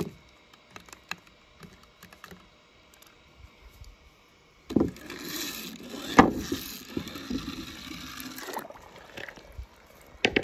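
A toy monster truck handled in a tub of paint, with faint small clicks, then its wheels rolled across paint-covered paper on a board: a steady rolling, scraping noise from about five seconds in until nearly nine seconds, with one sharp knock about six seconds in.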